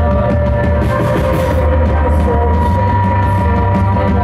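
A rock band playing live at full volume, with sustained electric guitar over drums.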